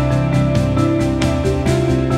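Instrumental background music with a steady beat over held bass notes.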